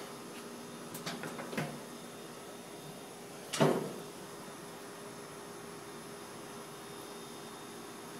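Stainless-steel lid of a Master Forge gas grill being lifted open: a few light knocks about a second in, then one short, loud metallic clunk about three and a half seconds in, over a faint steady hum.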